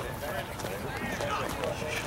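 Faint, indistinct voices of players and onlookers calling out across a ballfield, with no one speaking close up.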